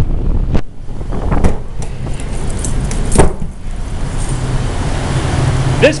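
Large building air-handler blower running and pulling outside air in through the intake louvers: a loud, steady rush of air over a deep rumble, with a few sharp knocks in the first half.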